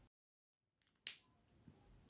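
Near silence: faint room tone, with one short click about a second in.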